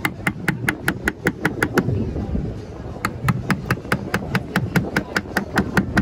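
A metal nail scratching and tapping at a wooden plank in quick, short strokes, about five a second, carving letters into the wood; the strokes pause for about a second midway, then carry on.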